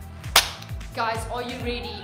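Background dance music with a steady bass-drum beat; a sung vocal line comes in about halfway. A single sharp click sounds just under half a second in.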